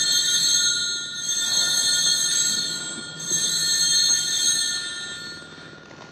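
Altar bells (a cluster of small bells) rung at the elevation of the consecrated host. They ring in three shakes, the ringing swelling and fading each time and dying away about five seconds in.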